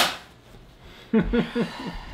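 A single sharp knock or slap on the counter at the very start, dying away quickly, then a short burst of a person's voice, laugh-like, a second later.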